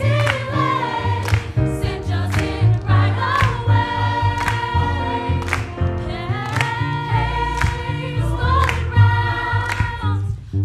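Mixed choir singing held gospel-style chords over a low bass line, with the singers clapping their hands on the beat, about three claps every two seconds.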